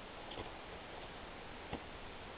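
Footsteps in snow: two soft thuds about a second and a half apart over a faint steady hiss.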